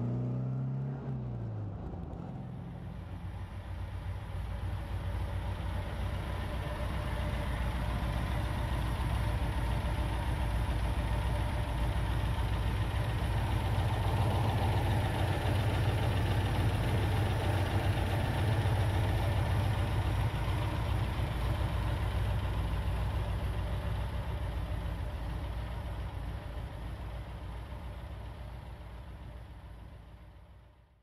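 1964 MGB's 1.8-litre B-series four-cylinder engine with twin SU carburettors idling steadily, heard at the open engine bay. It fades out near the end. For the first second or two the car is heard on the move, its engine note rising and falling.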